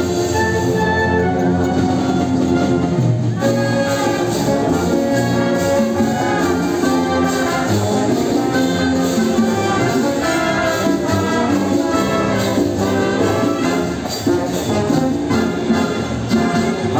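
Symphonic wind band playing an instrumental passage of a bolero arrangement, with clarinets and brass carrying the melody over a steady accompaniment.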